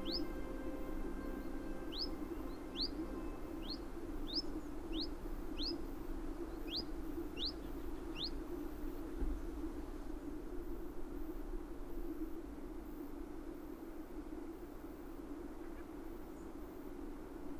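A bird calling with a series of about ten short, rising chirps, evenly spaced, which stop about eight seconds in. A steady low background rush carries on underneath.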